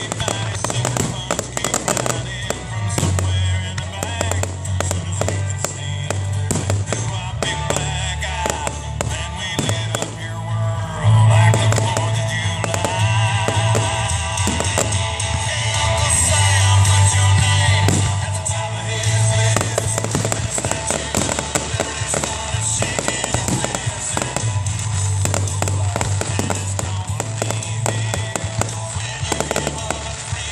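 Aerial fireworks shells bursting with many quick bangs and crackles, over loud music: a song with singing and a heavy bass.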